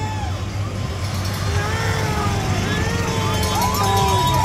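Golf carts driving past with a steady low motor hum, under wavering higher tones that rise and fall.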